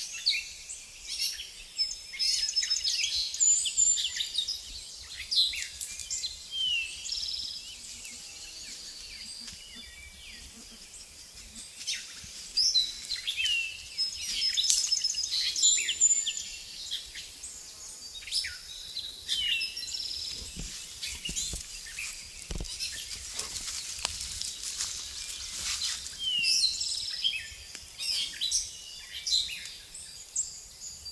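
Several forest birds calling and singing, with short high chirps and trills and a down-slurred call repeated every several seconds. Beneath them are faint rustles and clicks from footsteps moving through wet undergrowth and leaf litter.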